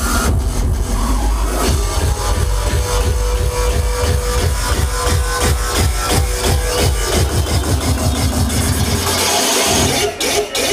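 Industrial hardcore played loud over a club sound system: a fast, evenly repeating kick-drum beat over heavy bass, with a held tone in the middle of the passage. The bass drops out just before the end.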